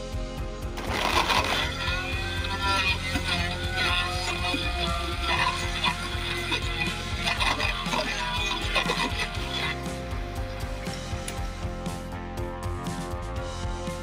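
Background music with steady instrumental tones; a singing voice comes in about a second in and drops out just before ten seconds, leaving the instrumental backing.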